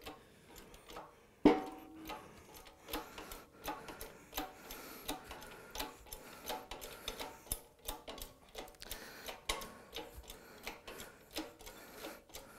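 Güde 20-ton hydraulic workshop press being worked to press an old sleeve out of a gearbox part. A sharp metallic knock with a brief ring comes about a second and a half in, then faint, even ticks about twice a second.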